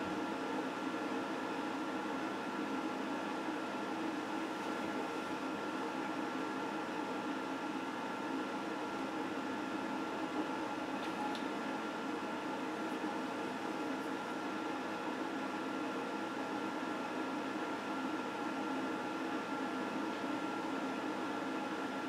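Steady electrical hum and hiss from a plugged-in electric guitar rig idling, with several constant hum tones and no notes sounding.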